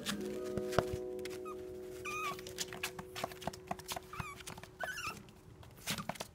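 Background music with long held notes. Over it, a long-coat Chihuahua puppy gives a few short high squeaks, about two, four and five seconds in, among scattered light clicks, with one sharper click just under a second in.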